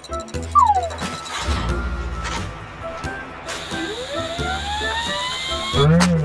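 Cartoon background music. Over it, a short falling tone comes about half a second in, and a rising whine builds over the last two and a half seconds: a cartoon sound effect of the truck straining with its wheels spinning in mud.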